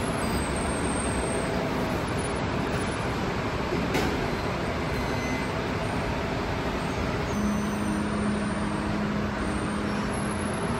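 Steady background noise of a restaurant beside an open kitchen, a ventilation-like hum with no voices. There is a faint click about four seconds in, and a low steady tone joins it after about seven seconds.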